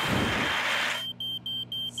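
Fire extinguisher spraying in one hiss that stops about a second in, over a smoke alarm beeping rapidly, about three beeps a second.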